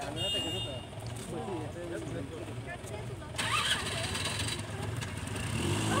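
People talking among themselves, with a steady low hum underneath; a hiss comes in about halfway through.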